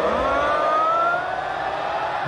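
Stadium crowd holding a long, slowly rising "ooooh" in unison, building up as a long throw into the box is about to be taken.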